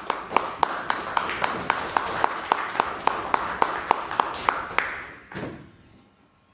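Audience applauding. One clapper's sharp, even claps at about four a second stand out over the rest. The applause dies away about five seconds in.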